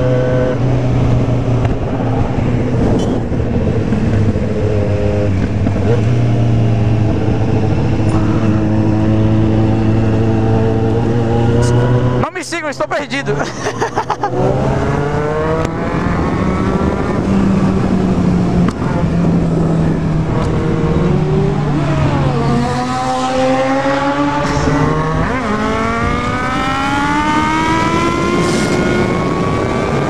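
A sport motorcycle's inline-four engine heard from on board at road speed. It holds a steady cruise, drops in level briefly about halfway through, then rises in pitch again and again as it accelerates through the gears.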